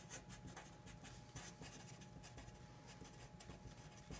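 Sharpie permanent marker writing on a sheet of paper: faint, quick, irregular scratching strokes as a line of words is written out.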